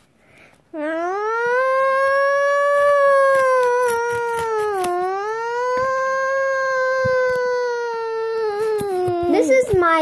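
A child imitating a siren with his voice: one long wailing tone that swoops up at the start, dips briefly about halfway through, holds, then sags and breaks off near the end.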